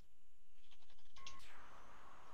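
Faint room noise over a video-call audio line, with a quick run of soft clicks about halfway through.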